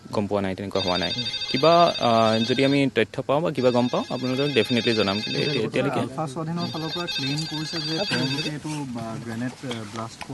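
A man speaking while a phone ringtone plays over him in three stretches of about two seconds each, with short gaps between.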